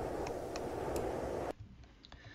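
A cold wind sound effect playing back as a steady windy hiss, cut off suddenly about three-quarters of the way through when playback stops.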